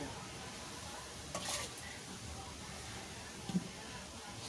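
Faint background noise with a brief scraping rustle about a second and a half in and a small knock near the end, from handling of bowls and ingredients on the table.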